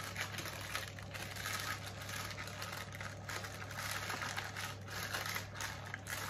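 Baking paper rustling and crinkling in irregular bursts as it is folded over and pressed down onto salmon fillets in a glass dish.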